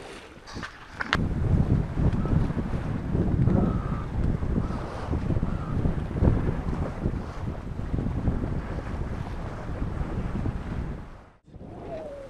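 Wind buffeting the microphone in a low, rumbling roar, with water rushing along the hull of a sailboat under way. The noise drops out abruptly near the end.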